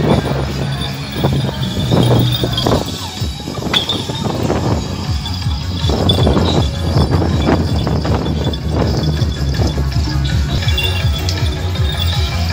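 Taiwanese temple-procession percussion music: dense, irregular strokes of drums and metal percussion, over a steady low hum.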